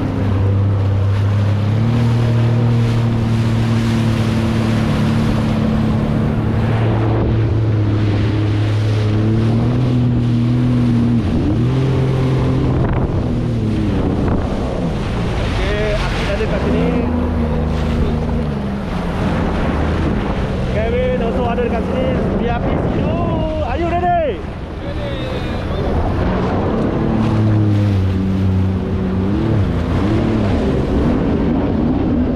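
Sea-Doo jet ski running under way, its engine pitch stepping up and down several times as the throttle changes, with water rushing and spraying in the wake and wind buffeting the microphone.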